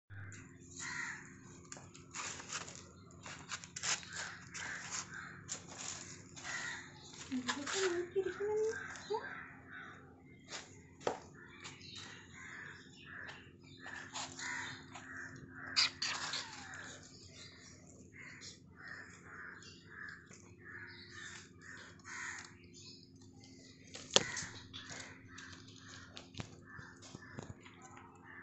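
Dry twigs and branches rustling and snapping with scattered sharp clicks as kittens wrestle in them, over a steady run of short calls, about two a second, in the background.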